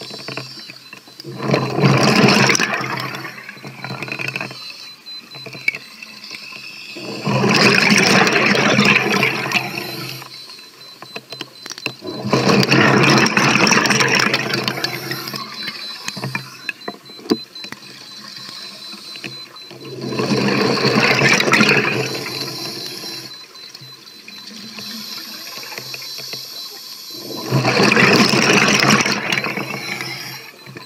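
A scuba diver breathing through a regulator underwater: exhaled bubbles rush out in five bursts of two to four seconds each, about every six seconds, with quieter gaps between breaths.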